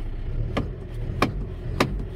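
John Deere 444K wheel loader's diesel engine idling steadily, heard from the cab, with three sharp clicks about half a second apart.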